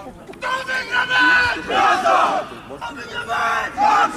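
A football team in a pre-match huddle shouting together in unison: a few loud, drawn-out group cries, the first held steady, the later ones rising and falling.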